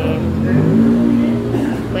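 People talking, over the steady low hum of a running motor vehicle.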